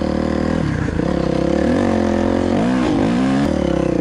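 Dirt bike engine running while being ridden. The note breaks just under a second in, then the pitch dips and rises again around three seconds as the throttle changes.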